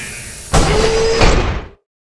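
Intro sound effect of heavy metal doors sliding shut: a loud clanging hit about half a second in, ringing with a held metallic tone for about a second before it cuts off.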